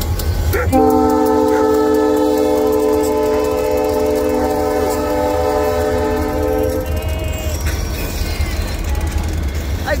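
Freight train rolling past with a steady low rumble, while a multi-chime locomotive horn sounds one long chord that starts just under a second in and stops about seven seconds in.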